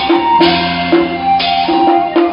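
Taiwanese opera (gezaixi) stage accompaniment: loud sustained melody notes over drums and percussion keeping a steady beat.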